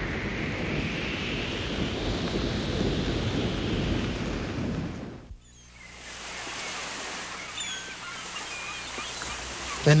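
Heavy storm surf: waves crashing in a dense, steady wash of noise with wind. It stops abruptly about five seconds in, leaving a much quieter background.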